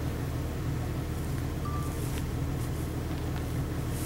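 A vehicle engine idling steadily, with a low, even hum.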